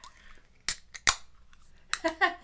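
A beer can's ring-pull being opened: a few sharp clicks and cracks of the tab, about a second in.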